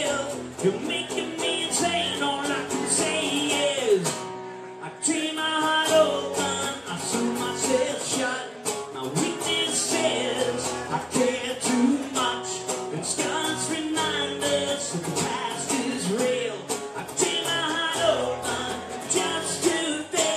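Live band music: guitar over a steady beat, with a melody line that bends in pitch, and a short drop in the music about four seconds in.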